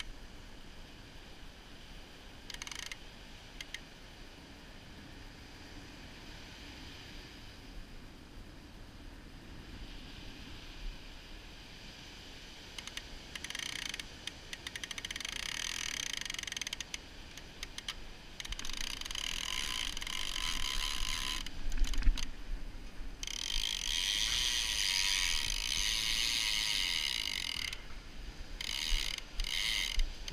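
Ratchet clicker of a Penn Senator 12/0 big-game reel running as line is pulled off it, in several bursts from about halfway through, the longest near the end: a shark has taken the bait and is running with it. A single thump about two-thirds of the way through.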